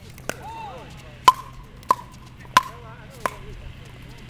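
Pickleball rally: a hard paddle striking the hollow plastic ball, a sharp pop five times, about every two-thirds of a second after the first.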